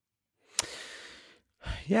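A man's sigh into a close microphone: one breathy exhale that starts sharply about half a second in and fades over about a second, just before he starts to speak.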